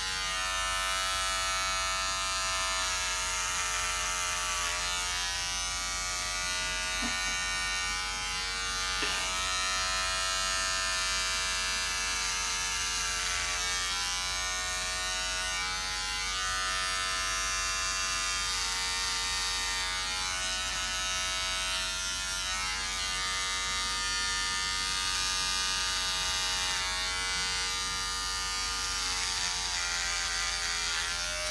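Electric beard trimmer buzzing steadily as it cuts hair on a head, its pitch dipping slightly now and then.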